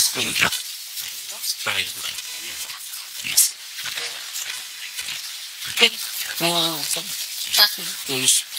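Ghost box output from a MiniBox Plus FM radio sweep run through a Zero-Gain Stall device: continuous static hiss broken by brief, chopped fragments of voices from the scanning radio, the longest about six and a half seconds in.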